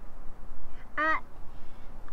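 A young girl's single short "uh", rising then falling in pitch, about a second in.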